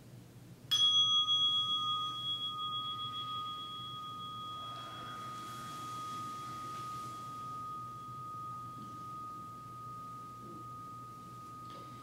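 A meditation bell struck once, its clear tone ringing on and slowly fading. The higher overtones die away within a few seconds. It marks the end of the sitting meditation.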